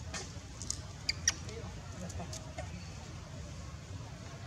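A few short, high-pitched squeaks from a baby macaque, the loudest two close together about a second in, over a steady low rumble.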